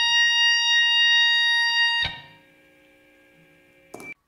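Noise rock: a held, high electric guitar tone rings steadily, then cuts off sharply about two seconds in. A faint ringing fades away after it, and there is a short click near the end.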